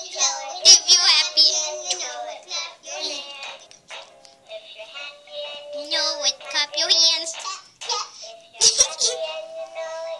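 Children singing a wordless tune in high voices, with a few long held notes.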